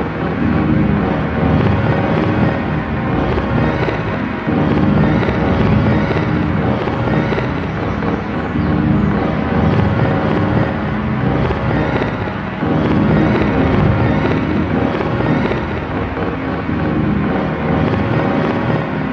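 Instrumental electronic music: a dense, steady drone with a heavy low end and a few held tones, swelling slowly in loudness, with no vocals.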